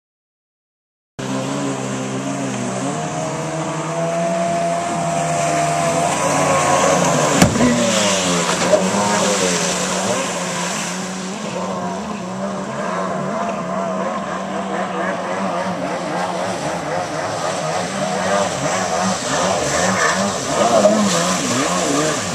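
Jet ski engine running, starting about a second in, its pitch rising as it revs up, then wavering with the throttle. A single sharp knock comes about seven seconds in.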